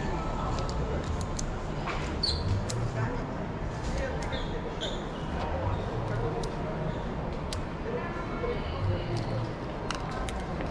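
Clothes hangers clicking and scraping along a clothes rack as jerseys are pushed aside one after another, with fabric rustling. Sharp clicks come scattered all through it.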